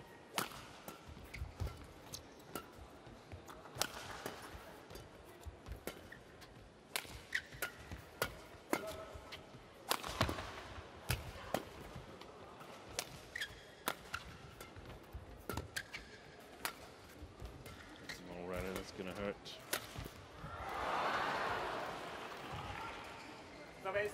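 Badminton rally: sharp cracks of rackets hitting a shuttlecock in a quick exchange, with brief shoe squeaks on the court floor. Near the end the crowd swells into cheering and applause as the point ends.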